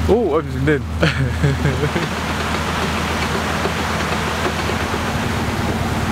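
Steady rush of water pouring through and over the upper lock gates into the lock chamber. Under it is the constant low hum of the narrowboat's BMC 1.5 diesel engine idling.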